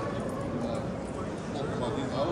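Indistinct murmur of many visitors' voices echoing in a large domed hall, with no single voice standing out.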